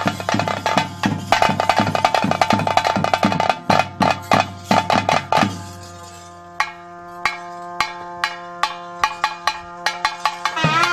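Traditional bhuta kola ritual music: fast, dense drumming over steady held tones. About five and a half seconds in the drumming drops away and the music turns quieter, leaving a held steady tone with only scattered drum strokes.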